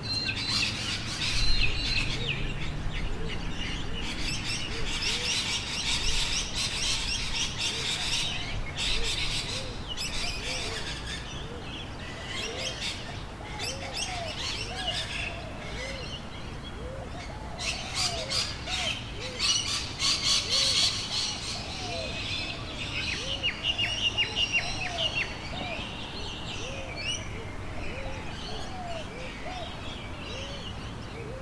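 Several birds chirping and singing together: bursts of rapid high chirps and trills, with a short, lower rise-and-fall call repeated about once a second.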